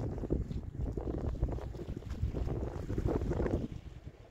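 Wind buffeting the microphone, an uneven low rumble, over the sea washing around the rocks.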